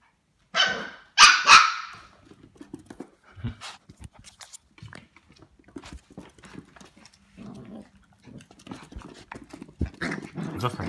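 Small dogs scuffling: about three loud barks in the first two seconds, then quieter scuffling noises and low growls.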